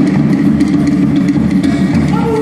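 Live Tahitian dance music: rapid, steady drumming with a strummed string instrument.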